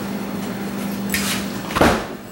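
A steady low hum, a brief hiss about a second in, then a single sharp thump shortly before the end.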